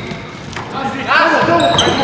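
Basketball bouncing on a hardwood gym floor, with players' voices calling out through the second half and short high sneaker squeaks near the end.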